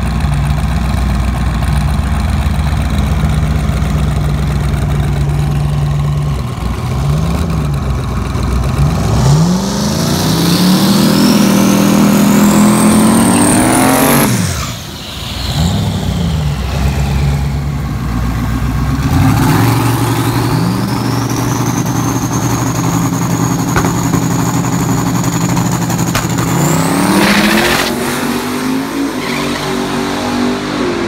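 Twin-turbo Pontiac GTO V8 idling, then revving hard through a burnout with a rising high squeal from the spinning rear tyres, easing off briefly about halfway. It revs again with a steady high whine as it comes to the line, then launches down the drag strip near the end.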